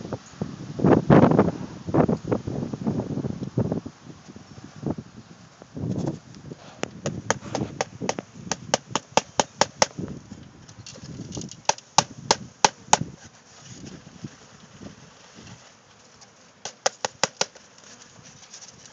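Wooden bee package being shaken over an open hive to dump the bees onto the frames: dull thuds and rustling for the first few seconds, then quick runs of sharp wooden knocks as the box is jarred, stopping for a few seconds and starting again near the end.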